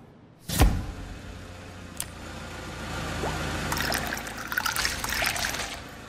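Liquid pouring into a drinking glass, the splashing and trickle growing louder a few seconds in, with a steady low hum underneath. There is a single sharp knock about half a second in.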